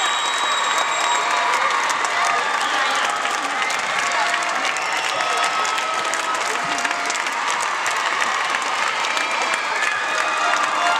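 Arena crowd applauding steadily, with voices and cheers from the audience mixed in.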